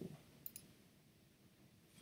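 A brief computer mouse click about half a second in, otherwise near silence with faint room tone.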